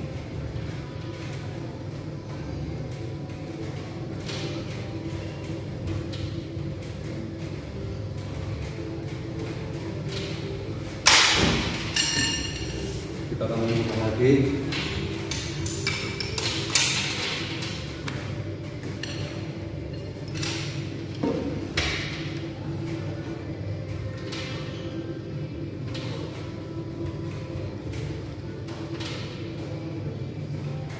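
Steady background music. A few loud metallic clanks, the first with a ringing ping, come from the multi-gym cable machine's metal hardware between about 11 and 17 seconds in, with a couple of softer knocks a little later.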